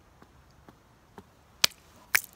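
A quiet pause with a few faint ticks, then one sharp click about one and a half seconds in.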